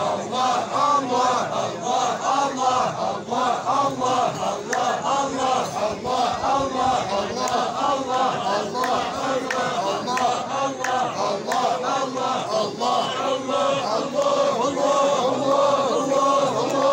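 Large group of men of the Aissawa Sufi brotherhood chanting together in a steady rhythmic unison during a hadra.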